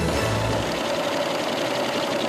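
A short music sting with a low bass swell in the first second or so, then a banknote counting machine running steadily, an even mechanical whir with a constant hum.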